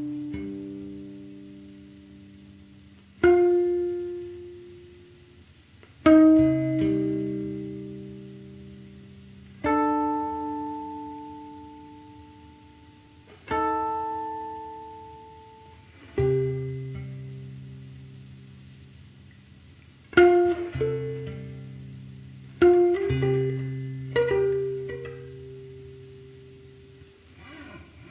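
Solo guitar playing slow, widely spaced chords, each struck and left to ring and fade for a few seconds before the next; after about twenty seconds the chords come closer together.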